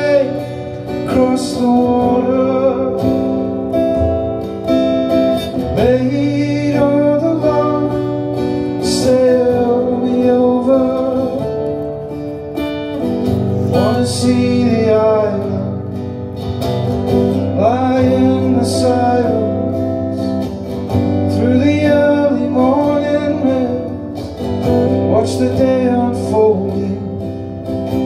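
Live solo song: an acoustic guitar strummed steadily under a man's singing voice, the sung phrases coming and going between guitar passages.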